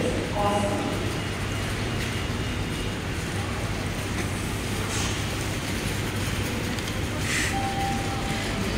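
Steady supermarket background noise with a low hum, and a brief voice about half a second in.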